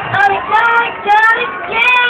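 A high voice singing short melodic phrases, with brief dips between them.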